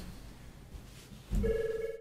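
Desk telephone's electronic ringer giving one short warbling ring, with a low thump as it starts, about a second and a half in.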